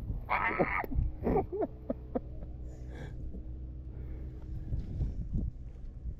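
A person laughing in short bursts, over a low steady hum.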